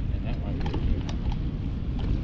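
Wind rumbling steadily on the microphone over open water, with a few light clicks.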